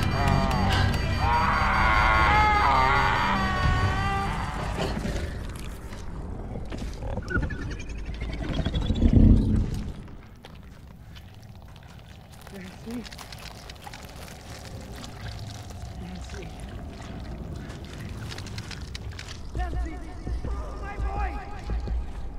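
TV drama soundtrack of dramatic score and sound effects. It is loud with wavering high pitched tones in the first few seconds and swells to a peak about nine seconds in. It then drops suddenly to a quiet low rumble with faint scattered sounds, rising again near the end.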